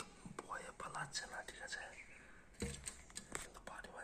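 Spotted dove tapping its beak against window glass: a scatter of sharp taps, two of them louder a little past the middle, under soft whispering.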